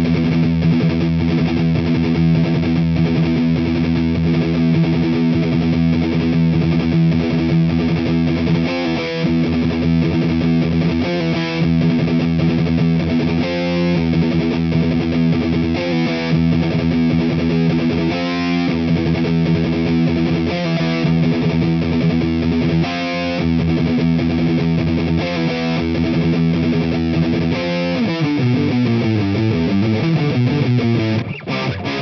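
Distorted electric guitar playing a palm-muted gallop riff in triplets on the open low E string. Every few seconds it breaks for a sliding power chord, and a descending single-note run comes near the end.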